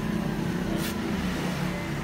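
A motor vehicle's engine running steadily with a low hum, and a brief hiss a little under a second in.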